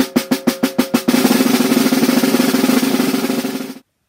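Snare drum played with sticks in even alternating semiquaver strokes, about eight a second, which about a second in turn into a continuous buzz roll, each stroke pressed into the head so the stick bounces several times. The roll stops suddenly near the end.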